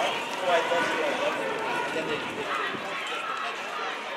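Indistinct chatter of a crowd of marchers walking along a city street, with several voices talking over one another. It grows gradually quieter toward the end.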